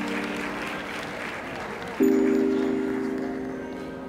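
Audience applauding over background music of sustained low chords; a new chord comes in about two seconds in and slowly fades as the clapping thins out.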